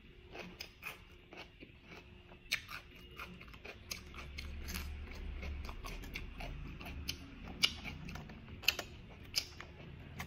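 Close-up chewing of steamed whelk meat, which is crunchy and chewy, with irregular sharp clicks of whelk shells knocking together as a hand picks through the pile. The loudest clicks come about two thirds of the way in.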